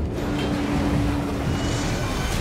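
A deep, steady low rumble with one held mid-low tone over it that fades out near the end, the ominous sound design under a shot of the platform's steel structure.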